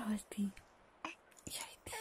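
A woman's soft voice speaking and whispering to a baby: two short syllables at the start, then a few breathy whispered sounds.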